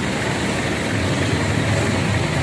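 Street noise with a motor vehicle engine idling nearby, a steady low rumble.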